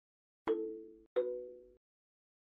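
Two chime-like sound-effect tones, about two-thirds of a second apart, each struck sharply and dying away within about half a second. They mark each step of an on-screen animation, as a new point is plotted.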